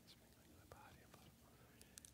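Near silence: quiet church room tone, with a few faint small clicks.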